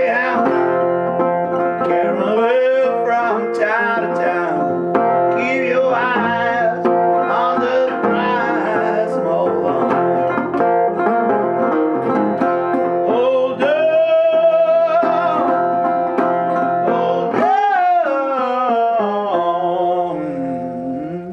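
A 1938 National resonator guitar being played through an instrumental break in a blues-gospel song, picked notes ringing under a melody that repeatedly glides and wavers in pitch.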